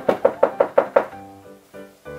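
A rapid, even run of knocks on a door, about six a second, stopping about a second in, over soft background music.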